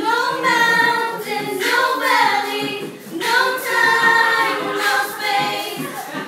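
A group of children and adults singing a song together unaccompanied, in sung phrases that start suddenly at the beginning.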